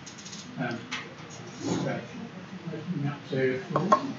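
Faint, distant speech too quiet to make out, as of a person talking away from the microphone.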